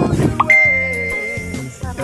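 Background music. About half a second in, a single high note is held for roughly a second, with short gliding pitched notes around it.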